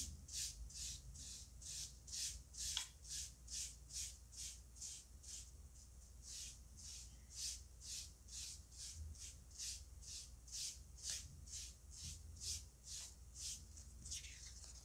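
Small piece of foam sponge dabbed and rubbed with green paint over an EVA foam leaf laid on paper: faint, soft scratchy strokes in an even rhythm of about two to three a second.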